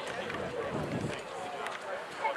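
Indistinct voices of ballplayers and spectators across an open baseball field, with no clear words, over a steady background hiss.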